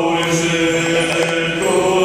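Mixed choir of men's and women's voices singing a Romanian Christmas carol (colind) in chords, with held notes that change about every second.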